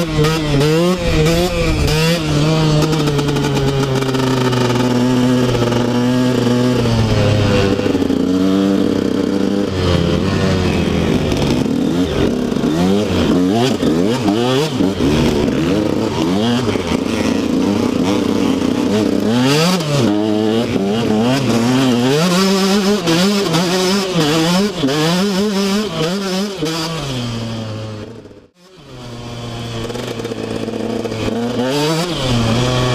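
KTM 125 SX single-cylinder two-stroke engine revving up and down as the dirt bike is ridden, the pitch rising and falling with the throttle. Near the end the sound fades out briefly and comes back.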